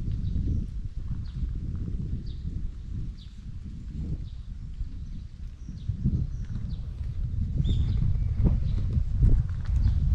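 Footsteps of someone walking with a handheld camera, with wind rumbling on the microphone and getting louder over the last few seconds. Small birds chirp faintly every second or so.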